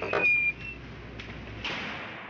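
A metal jail cell door opening: a short clatter with a brief high squeak at the start, then two softer knocks.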